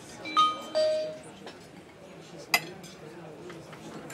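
Mobile phone's incoming-message alert: a two-note chime, a high note then a lower one. A single sharp clink follows about two and a half seconds in.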